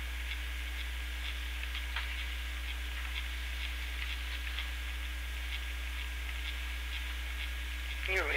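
Room tone of a speech recording: a steady low electrical hum with a faint steady tone above it and faint, irregular ticks.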